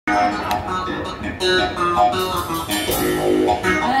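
Live band playing, with electric guitar to the fore over bass guitar.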